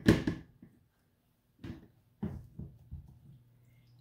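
A few soft taps and clicks as a clear acrylic stamp block and an ink pad are handled: one about one and a half seconds in, then several more close together in the second half.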